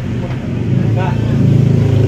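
A steady low mechanical hum, growing louder about a second in.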